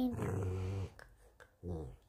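A dog growling low while being petted: one growl lasting most of a second, then a shorter one near the end.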